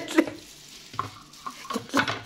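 A few light clicks and knocks as the plastic lid of an electric mini chopper's steel bowl is lifted off and set down on the counter.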